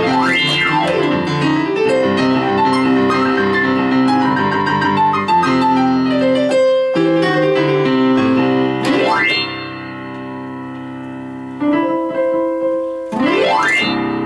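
Digital piano played with full chords and quick runs, with sweeping glissandos across the keys near the start, about nine seconds in, and again at the very end. A held chord rings more quietly for a moment before the closing phrase.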